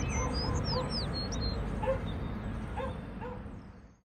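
Morning outdoor ambience: small birds chirping in quick descending whistled notes, with a dog barking in the distance about six times, over a low steady background rumble. The ambience fades out at the end.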